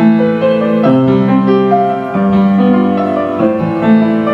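Upright piano played solo: a slow piece of held chords under a melody, with a new chord struck about every second or so.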